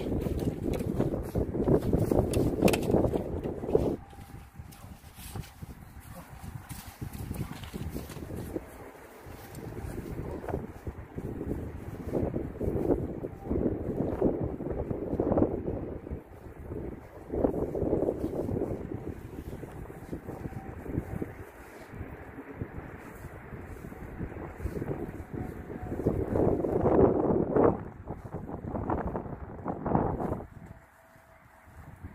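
Wind buffeting the microphone, loud for the first few seconds and then coming in gusts that rise and fall several times.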